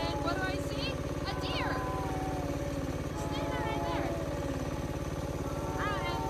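Dirt bike engine idling steadily, with a fast, even firing pulse.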